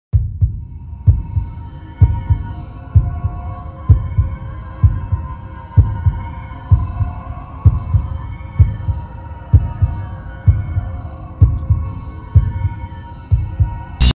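Logo-intro sound design: a deep, heartbeat-like double thump repeating about once a second over a steady hum with sustained high tones, stopping abruptly at the end.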